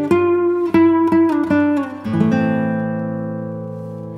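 Background music on acoustic guitar: a quick run of plucked notes, then a lower chord about halfway through that is left to ring out and slowly fade.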